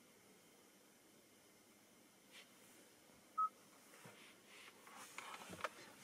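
Near silence broken once, about three and a half seconds in, by a single short, high electronic beep as the phone is plugged back in and Android Auto connects.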